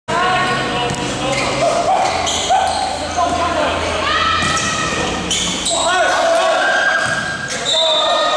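A basketball being dribbled on an indoor gym court, with players' voices echoing in the large hall and short high-pitched squeaks from shoes on the floor.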